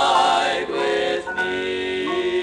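A male gospel vocal quartet singing a hymn in close four-part harmony, holding chords that shift to new notes partway through.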